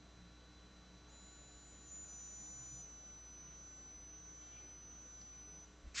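Near silence: a faint, steady electronic whine and low hum from the recording's background noise.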